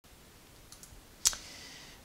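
One sharp click at a computer, about a second and a quarter in, after two faint ticks a little earlier; a faint steady hiss follows.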